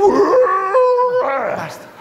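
A man howling like a dog: one long call that holds a note, steps up in pitch and holds again, then slides down and fades near the end.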